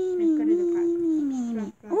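A child's voice acting a toy pet character, making one long drawn-out wordless cry that slides slowly down in pitch and breaks off near the end, followed by a short rising-then-falling note.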